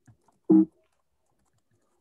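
One short voiced sound, like a brief "mm" or "yeah", about half a second in over a video-call line. Apart from a couple of faint ticks, the rest is gated to near silence.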